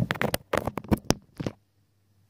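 Close handling noise on the recording device: a quick run of rustles, knocks and clicks as a hand and sleeve brush against it near its microphone, stopping suddenly about a second and a half in.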